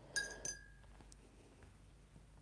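Paintbrush tapping against a glass water jar: two light clinks about a third of a second apart, the first leaving a short ringing tone.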